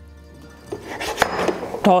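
Olive oil poured from a glass cruet onto spaghetti in a steel frying pan: a soft hiss starting about a second in, with a couple of sharp clicks.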